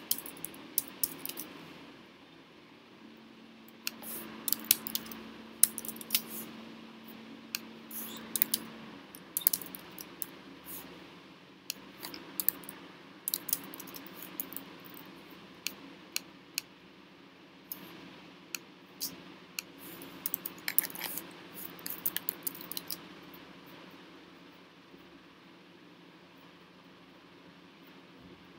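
Computer keyboard typing: sharp key clicks in irregular bursts with short pauses between. A faint steady hum sounds for a few seconds early on.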